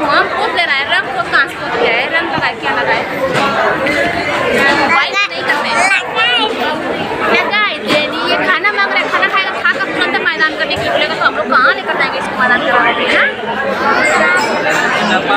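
Continuous close-up talking and chatter: a woman speaking to a small child, with the child's voice among it.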